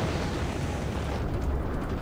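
TV sound effect of a spaceship engine's full-burn blast: a steady, deep rumble.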